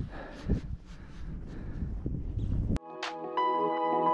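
Wind rumbling on the microphone, uneven and gusty, which cuts off abruptly near three seconds in; calm ambient music with sustained, chime-like struck notes takes over.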